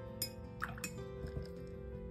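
A few short clinks and small watery splashes as a paintbrush is dipped and tapped in a water jar, over soft background music.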